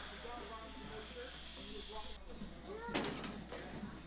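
Faint voices, then a single punch hit about three seconds in, the loudest moment.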